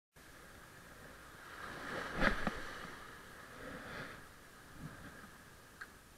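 Faint steady wash of noise that swells twice, with two sharp knocks a little over two seconds in and a small click near the end.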